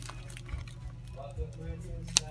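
Soft handling sounds, a few light knocks, as a squishy toy is taken out of its plastic wrapper, with a faint voice in the second half and a steady low hum underneath.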